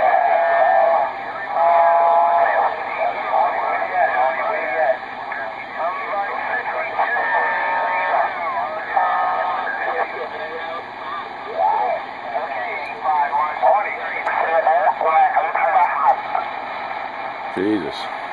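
RG-99 CB radio receiving distant skip stations on channel 38: voices come through its speaker, thin-sounding, with stretches of steady whistling tones mixed in.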